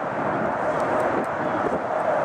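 Boeing 777-200LR's GE90 jet engines running steadily as the airliner rolls out along the runway after touchdown, heard from a distance across the airfield.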